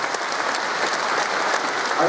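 Audience applauding with steady, even clapping.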